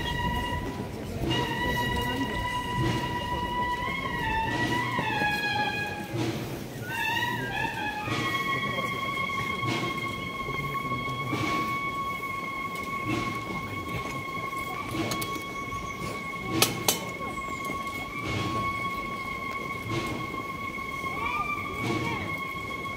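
Cornets of a cornet-and-drum band playing high held notes, with short falling and rising bends in the first seconds, then one long sustained note from about eight seconds on. A crowd murmurs underneath.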